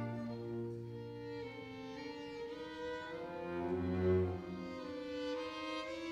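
String quartet of two violins, viola and cello playing slow, sustained bowed chords, with a low cello note swelling about four seconds in.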